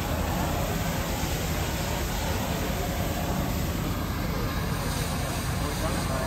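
Steady rushing of a fire hose stream spraying into a burned truck's smoking engine compartment, over a low steady engine rumble.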